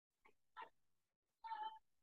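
Near silence, broken by two faint short sounds; the second, about one and a half seconds in, is a brief high-pitched call with a steady pitch.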